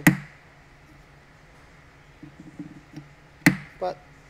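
Small ball-peen hammer tapping a wooden dowel into a wooden block: a sharp tap right at the start and another about three and a half seconds in.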